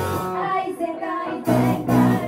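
Live rock band with electric guitar, bass, drums and vocals. Drums and bass drop out for about a second and a half, leaving a singing voice over thinner guitar, then the full band comes crashing back in.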